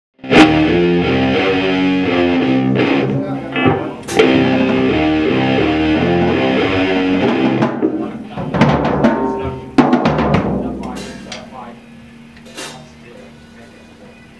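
Metal band playing loudly in a rehearsal room: electric guitar through a Marshall stack, bass guitar through a Hartke cabinet, and a drum kit with cymbals. The steady playing breaks off about seven seconds in. A few more drum hits and chords follow, and the last chord rings out and fades away.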